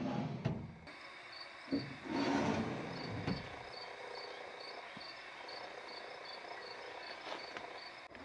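Cricket chirping steadily in a regular rhythm, about two to three short high chirps a second. A brief thump and a rustle of handling come between about two and three seconds in.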